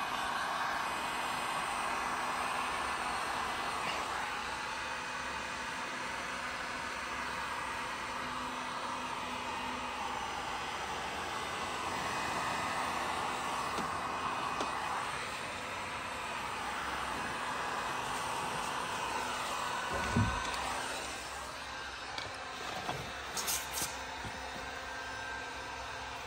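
Heat gun blowing steadily as it heats window tint film along the top edge and corners of a car door glass. It eases off after about twenty seconds, around a short laugh.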